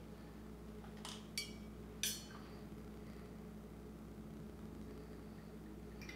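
Three faint clicks about one to two seconds in, the last a short ringing clink, as the cap is worked off a glass bottle of coffee liqueur, over a steady low hum.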